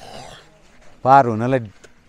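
A man's voice speaking one short phrase about a second in, with a faint hazy noise just before it.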